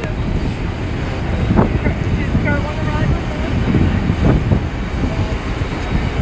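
Steady low rumble of engine noise on an airport apron, with a few brief faint voices in the distance.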